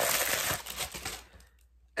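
Plastic wrapping crinkling and rustling as it is pulled off a ceramic coffee mug, dying away about a second and a half in.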